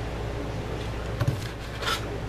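A cleaver cutting through a freezer-chilled smoked sausage onto a cutting board: a dull knock a little past a second in, then a short crisp slicing stroke near the end.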